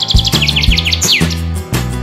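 Bird chirping sound effect: a quick run of high chirps for about the first second, ending in one falling note, over children's background music with a steady beat.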